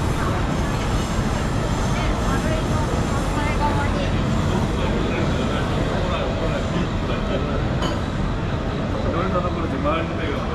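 Busy night-street ambience: voices of people talking at outdoor bar tables over a steady low rumble of city noise.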